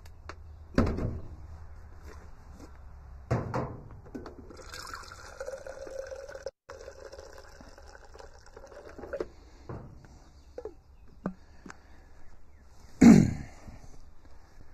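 Coffee poured into a mug for about four and a half seconds, a steady splashing stream with a faint ringing note, between clunks of things being handled on a shelf. A loud knock near the end.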